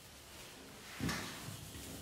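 A single knock about a second in as a whiteboard eraser is brought against the board, followed by faint rubbing of the eraser wiping the whiteboard.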